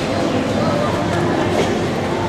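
Steady background chatter of many people in a busy indoor market hall, with no single voice standing out.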